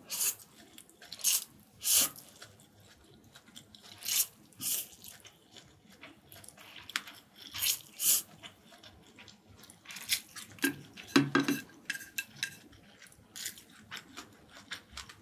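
Close-miked eating sounds: japchae glass noodles being slurped in a series of short, sharp bursts, with chewing and chopsticks clicking against a bowl. A denser, louder run of sounds comes about eleven seconds in.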